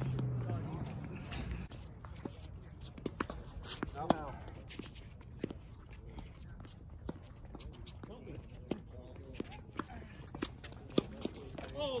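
Tennis balls struck by rackets and bouncing on a hard court during a doubles rally: sharp pops at irregular intervals. A laugh comes at the start, and a brief voice about four seconds in.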